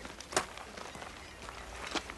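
A single sharp click or knock about a third of a second in, with a few fainter ticks and scuffs over a low background hiss.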